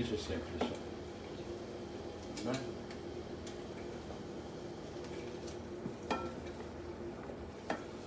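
Celery frying in a sauté pan, a steady low sizzle, with a wooden spatula stirring and knocking against the pan a few times.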